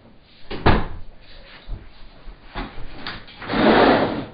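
A few knocks and bumps of a desk chair and desk being handled, then a louder rustling scrape near the end as someone moves the chair and settles at the desk.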